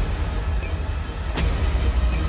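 Action-trailer soundtrack: a deep, steady low rumble with one sharp hit about one and a half seconds in.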